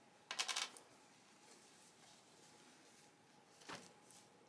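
A small metal carabiner clicking and rattling as it is unclipped from a towel, a brief burst of clicks about half a second in. After it comes faint cloth rustling and a single light knock near the end.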